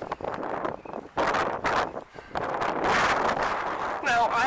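Wind buffeting the microphone in gusts, strongest after about a second and again through the second half.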